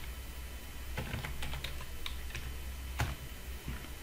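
Typing on a computer keyboard: a run of irregular keystrokes, one louder key about three seconds in, over a steady low hum.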